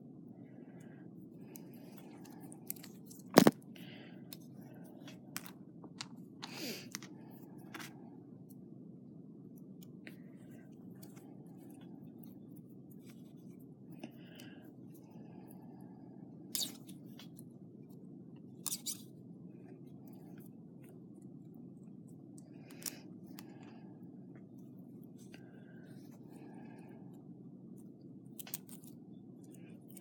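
Scattered small clicks and light scrapes of beads and thin wire being handled as beads are threaded onto the wire, with one sharper click a few seconds in, over a steady low hum.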